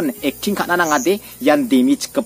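A man speaking in Garo in a continuous monologue, with sharp 's' sounds between the words.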